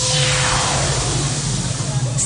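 Club dance-music breakdown: a noise sweep falls from high to low over about a second and a half, over a held low synth drone, with no drum beat.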